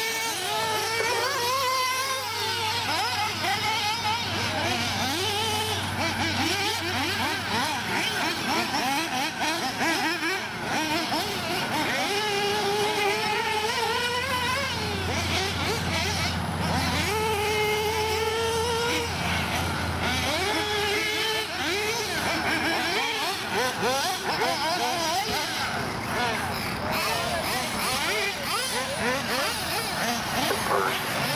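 Several 1/8-scale nitro RC buggies' small two-stroke glow engines racing round the track, their high-pitched notes rising and falling in pitch, several at once and overlapping.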